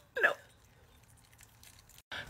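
A woman's short spoken "No", then near silence.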